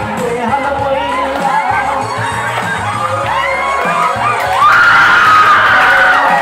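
Group of voices singing over music with a low repeating bass line, accompanying a traditional grass-skirt dance. About two-thirds of the way in a louder, high held cry joins in and carries on.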